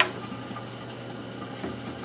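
Steady low hum with a couple of faint knocks as an electric stapler is pressed into place under a wooden cabinet lip, not yet fired.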